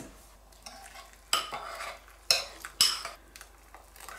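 Hot water poured from a metal kettle into a ceramic bowl of chopped shallots and stock powder, while a metal spoon stirs, with three sharp clinks against the bowl.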